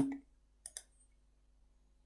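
A computer mouse button clicked twice in quick succession, a double-click, about two-thirds of a second in.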